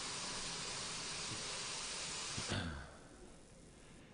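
A steady hiss that drops away about two and a half seconds in, leaving faint room tone.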